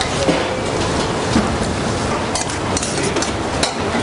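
Lamb ragout sizzling in a hot pan as wet fettuccine goes in, a steady loud hiss, with a few light metal clicks from tongs against the pan in the second half.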